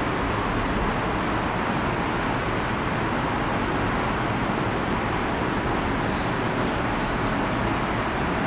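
Steady background noise, an even rushing hiss with no rhythm or pitch, with a couple of faint short high squeaks about two seconds in and around six to seven seconds.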